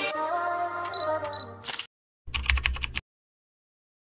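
Background music ends under a DSLR camera sound: two short high beeps about a second in, then, after a brief gap, a rapid burst of shutter clicks lasting under a second.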